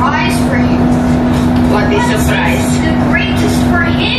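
Voices talking in short phrases over a steady low hum and a constant low rumble.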